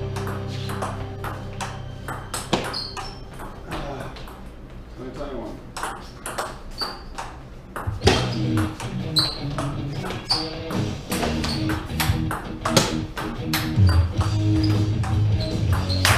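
Table tennis rally with a Nittaku 44 mm 3-star ball: quick sharp clicks of the ball striking paddles and table, several a second, over music.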